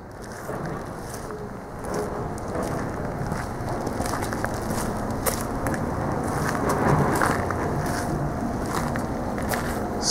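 Footsteps crunching on gravel, a continuous rough noise with scattered small clicks that grows a little louder after about two seconds.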